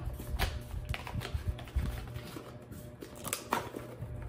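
A cardboard perfume box being handled and pried at, with scattered light clicks, knocks and scrapes as a glass cologne bottle is worked out of its tight-fitting box.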